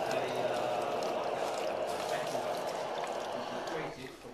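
Steam jet from a hat-blocking steamer hissing steadily onto a Panama straw hat on its block, softening the straw for shaping. It drops away just before the end.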